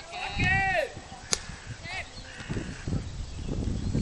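A player's loud, drawn-out shout, then a single sharp pop as the pitch reaches the plate, followed by more calls and chatter from the youth baseball players.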